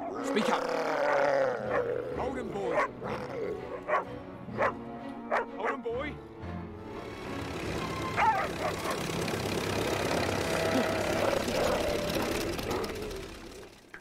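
Film soundtrack with a dog barking and snarling in sharp separate calls through the first half, under a music score that swells and holds steady in the second half.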